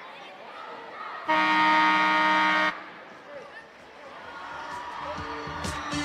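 Gymnasium scoreboard horn sounding one loud, steady blast of about a second and a half, starting and stopping abruptly. It marks the end of a timeout. Crowd chatter fills the large hall around it, and music with a beat comes in near the end.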